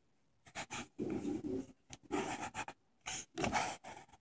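Fingertips rubbing across a glossy magazine page in swipe and pinch-to-zoom strokes, a series of short scuffs about once a second.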